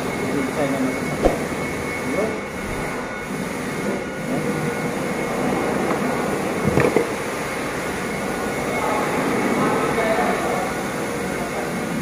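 Steady, fairly loud background hum of machinery or ventilation, with faint voices under it and two short knocks, one about a second in and a louder one near seven seconds.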